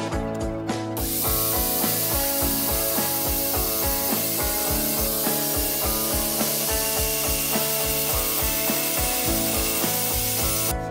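Angle grinder with a sanding disc starting about a second in and grinding down a block of hard ulin wood, a steady hissing, rasping noise. Background music with a steady beat plays throughout.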